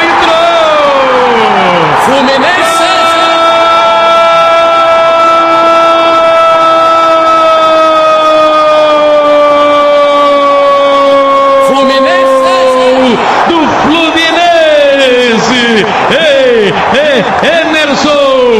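Brazilian radio football commentator's goal call: a few shouted words, then one long held 'gol' shout of about ten seconds that sinks slowly in pitch, then fast excited shouting, over stadium crowd noise.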